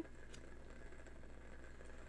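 Faint handling of tarot cards on a tabletop: a soft rustle with one light tick about a third of a second in, over a steady low hum.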